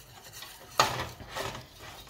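A wire whisk scraping around a stainless steel saucepan, stirring a thick butter-and-flour roux as it cooks. It is soft at first, then gives a louder scrape about a second in.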